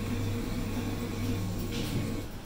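Coin-operated Jolly Town school-bus kiddie ride's motor running with a steady low hum, in its last moments before the ride stops.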